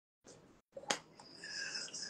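Incidental noises from a person signing on a video call: a sharp click about a second in, then a brief high hiss. The sound cuts in and out to dead silence between noises.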